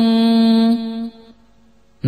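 Pali Buddhist protective chant (pirith): a chanting voice holds the last syllable of a verse line on one steady note, then fades out a little after a second, leaving a short pause before the next line.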